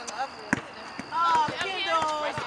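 A basketball bouncing on asphalt as it is dribbled, a few sharp bounces, with people's voices over it.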